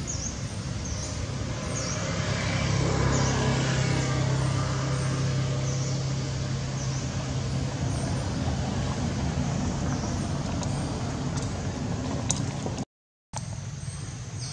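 A motor vehicle engine running close by, a steady low hum that grows louder about two seconds in and stays loud for most of the stretch. Faint high chirps repeat over it, and the sound drops out to silence for a moment near the end.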